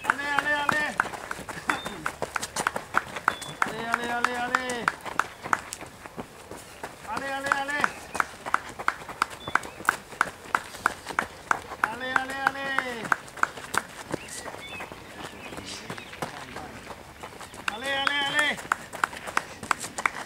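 Spectator cheering runners on: drawn-out shouts, five of them about a second each, over a steady rhythm of sharp slaps about three a second.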